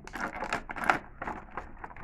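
Clear plastic packaging crinkling in short, irregular crackles as hands work an action figure free of it.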